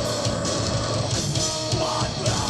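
A live metal band playing an instrumental passage: distorted electric guitars, bass guitar and a drum kit, loud and dense, with no vocals.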